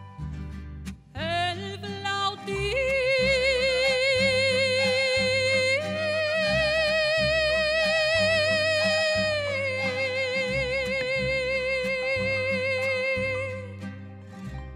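A female mariachi singer holds one long wordless note with a wide vibrato over mariachi accompaniment with harp. She slides up into the note about a second in, steps it higher near the middle, drops back down a few seconds later and lets it fade near the end, while low plucked bass and string notes keep going underneath.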